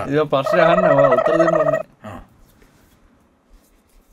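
A person's voice: a loud, drawn-out, wavering vocal sound for about the first two seconds, a brief sound just after, then quiet room tone.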